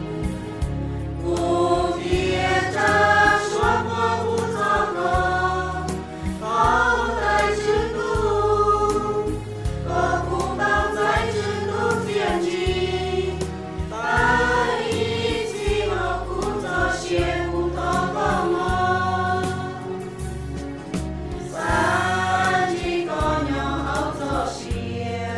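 A Christian hymn sung by a choir over instrumental accompaniment with a steady bass line.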